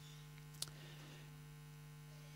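Faint, steady electrical mains hum in the recording, with one short click a little over half a second in.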